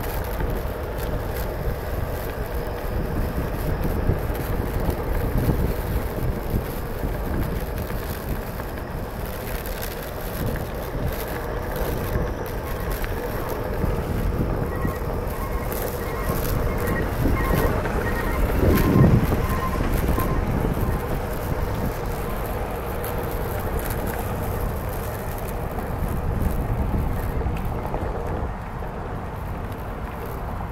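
Wind buffeting the microphone while riding a Onewheel electric board on pavement, a steady low rumble with a faint steady hum underneath, swelling louder about two-thirds of the way through.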